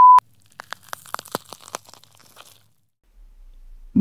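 A short, loud, steady electronic beep cuts off just after the start. It is followed by about two seconds of scattered crackling clicks, then quiet with a faint low hum near the end.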